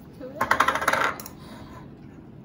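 Metal fork clinking and scraping against a plate in a quick run of clicks lasting under a second, starting about half a second in.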